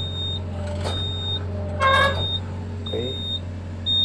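Excavator cab alarm beeping steadily about once a second over the low, steady running of the engine. A brief, louder pitched sound comes about halfway through.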